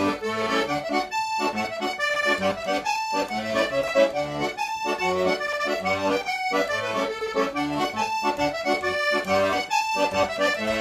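Piano accordion played solo: a tune on the keyboard over the bass buttons, with short breaks in the sound every second and a half to two seconds.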